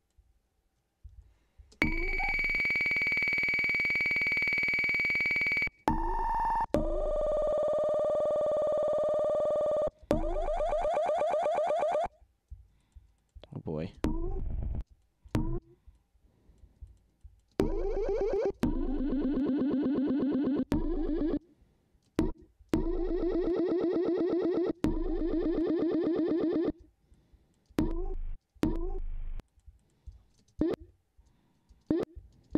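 A short electronic "bip" sample played back at several pitches. First comes a long held high beep, then a brief middle tone and a lower held tone. After that come rapidly repeating buzzy tones and short separate blips with a quick upward swoop in pitch.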